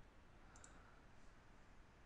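Near silence: room tone, with one faint mouse click about half a second in.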